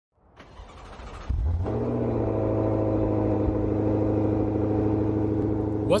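A car engine sound fades in, then runs steadily at an even pitch from just over a second in, as a rumbling drone.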